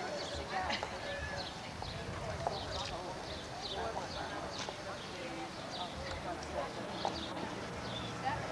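Indistinct talk from several people, with many short sharp clicks scattered throughout.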